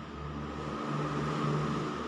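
A steady low mechanical hum, like an engine running, with a constant thin high-pitched whine over it, swelling slightly in the middle.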